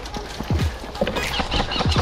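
Footsteps moving fast through dry leaf litter and brush: crunching and twig crackle, with two heavy footfall thuds, about half a second in and near the end.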